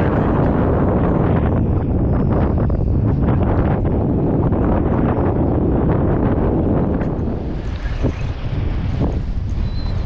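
Strong wind buffeting the microphone, a loud, steady rumbling noise that eases slightly near the end.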